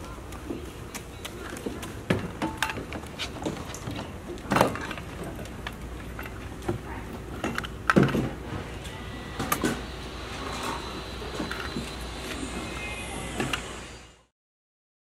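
Outdoor play-area ambience: scattered knocks and clacks of toys being handled, the loudest about four and a half and eight seconds in, over a steady low hum, with faint children's voices.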